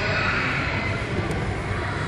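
Steady rushing hum of a large indoor play hall, constant and even, with a faint steady high tone running through it.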